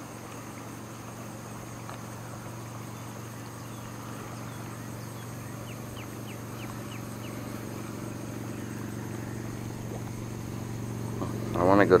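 A motor running steadily with a low even hum that slowly grows louder through the second half. About halfway through, a bird gives a quick series of about six short high chirps.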